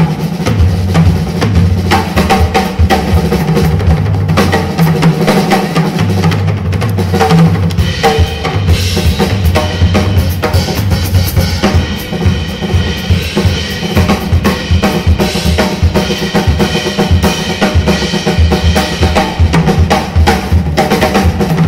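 A tuba, guitar and drum kit trio playing live, the drums busy and to the fore with bass drum, snare and cymbals. Low held notes run underneath, and higher held tones join about eight seconds in.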